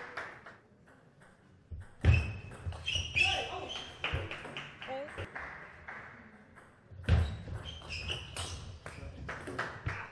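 Table tennis ball clicks off bats and table, and players shout loudly as points are won, once about two seconds in and again about seven seconds in.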